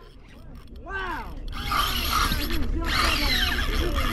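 A spinning reel being cranked quickly, its gears whirring as line is wound in. The sound starts faint and grows louder over the first second or two, then holds steady.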